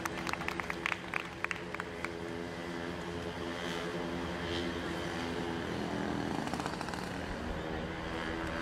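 A steady engine drone with a low hum that shifts in pitch about six seconds in, and a run of sharp clicks during the first two seconds.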